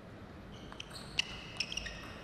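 A table tennis rally: a quick, irregular series of sharp clicks as the celluloid-type plastic ball is struck by the rackets and bounces on the table, along with a few brief high squeaks.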